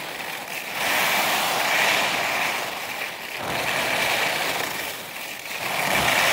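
Sliding down a groomed ski piste: a steady hiss and scrape on firm snow mixed with wind rushing over the microphone, with a faint high whistle running through it. It swells louder and eases off in waves every couple of seconds.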